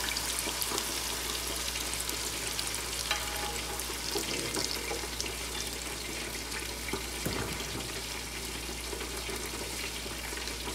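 Beaten eggs frying in hot oil in an electric skillet over onions and peppers, a steady sizzle with scattered small pops.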